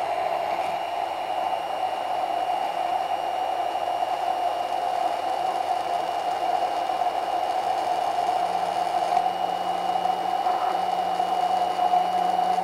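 Hand-held immersion blender (a Bamix-type stick blender) running steadily at one speed, blending a hot egg custard crémeux smooth in a tall beaker. It is a continuous motor whir with a faint high whine above it, and it stops just after the end.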